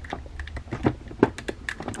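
A few irregular light plastic clicks and taps as a Marvel Select Planet Hulk action figure's head is turned and tilted by hand on its head joint, the sharpest click a little past halfway.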